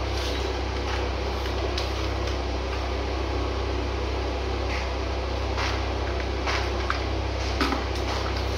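A steady low hum runs throughout, with a few faint clicks and rustles from electrical cables being pulled and arranged inside a breaker panel.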